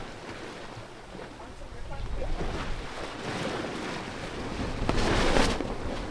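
Wind and water rushing past a sailboat under spinnaker, with wind on the microphone. The rushing swells louder about five seconds in.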